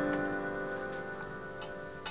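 The last piano chord ringing out and fading away, with a few faint clicks over it.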